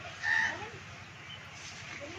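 A bird's short call about a third of a second in, with a fainter second call just after, over a steady low background noise.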